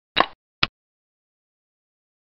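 Chinese chess program's piece-move sound effect as a black cannon is played: two sharp clacks about half a second apart, the first slightly longer.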